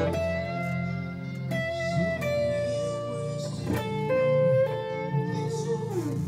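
Electric guitar playing a slow line of single notes, each left to ring, over a steady low hum.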